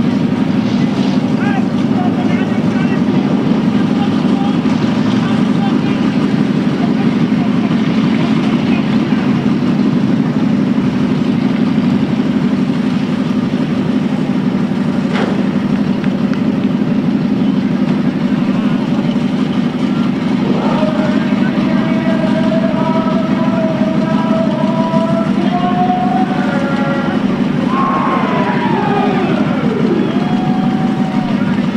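V8 dirt-track stock car engines running slowly in a steady low rumble. In the last ten seconds, higher tones rise slowly and then swing down as an engine changes speed.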